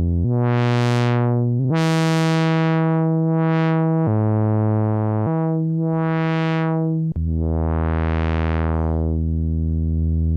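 1974 Moog Minimoog playing a few held notes in turn while its ladder filter cutoff is swept up and down with the emphasis (resonance) turned up. The resonant peak rises and falls through the harmonics, giving a repeated 'wow, wow' sound.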